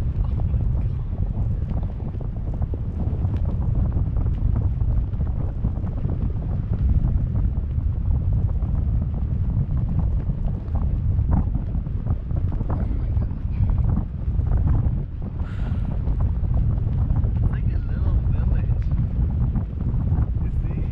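Wind buffeting the microphone of a camera carried aloft on a parasail: a steady, loud low rumble, with faint voices in the second half.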